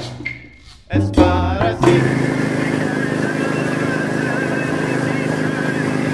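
Music fades out in the first second and a short pitched phrase follows. From about two seconds in, a boat's engine runs steadily, with wind and water noise.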